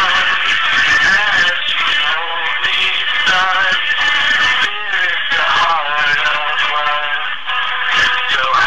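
Music with a man singing, the voice gliding and holding notes over a continuous backing.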